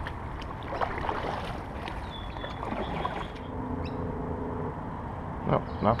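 Kayak being moved out of a reed bed: reeds brushing and scraping against the hull and paddle in scattered rustles over a steady low wind rumble on the microphone. A brief steady hum sounds a little past halfway.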